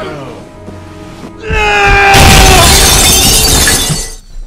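About one and a half seconds in, a voice lets out a long, loud scream, falling slightly in pitch, and a loud crash of shattering follows and runs until the end, over music.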